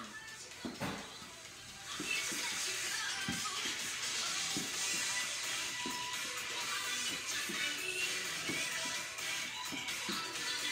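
Background music that comes up about two seconds in and carries on steadily, with a few soft thuds of feet landing during a bodyweight exercise.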